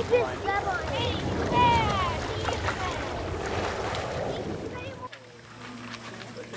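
Children's high-pitched calls and shouts, with no clear words, over wind rumbling on the microphone and light water noise. The sound drops abruptly about five seconds in.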